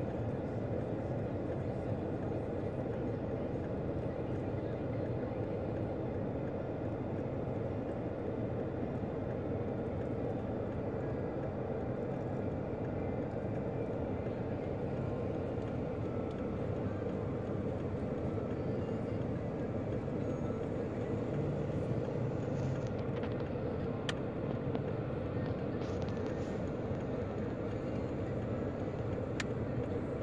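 Steady drone and hiss of a car heard from inside the cabin, with a couple of faint clicks late on.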